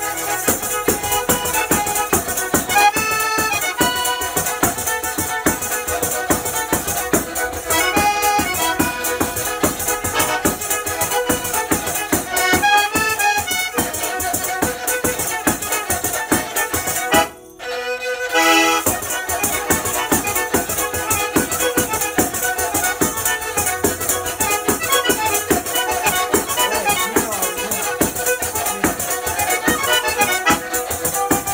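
Calabrian folk music: a zampogna (bagpipe) plays a steady drone with a melody over it, alongside a bowed lira calabrese, while tamburello frame drums keep a fast, even beat. The music cuts out for about half a second a little past the middle, then picks up again.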